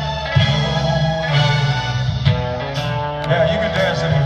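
Live rock band playing: electric and acoustic guitars, bass and drums, recorded from the audience.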